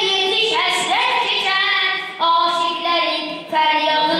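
A boy singing a solo religious chant into a microphone, in long held notes whose pitch slides and bends, with short breaks for breath about two seconds in and near the end.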